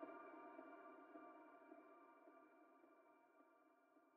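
The last held chord of a rap instrumental fading out, a few steady tones dying away evenly toward near silence.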